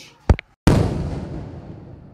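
An edited sound effect: a short sharp pop, then a sudden loud boom-like burst of noise that fades away over about a second and a half.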